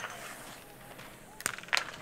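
Faint outdoor ambience at a biathlon shooting range. There is a sharp click at the very start and two more about one and a half seconds in.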